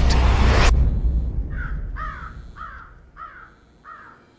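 A loud, deep, noisy trailer sound effect cuts off abruptly less than a second in. After a short quiet, a bird calls five times in a short series, about half a second apart, much fainter.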